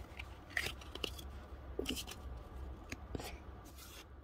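Pokémon trading cards being handled: a few faint, short snaps and slides of card stock as cards are moved through a stack, with a faint low hum underneath.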